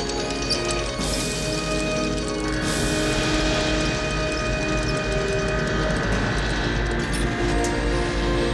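Film score music with long held notes, over a steady low rumble. A rushing high hiss comes in about a second in and swells about two and a half seconds in.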